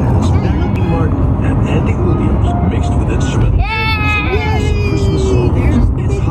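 Steady road and engine rumble inside a moving car's cabin.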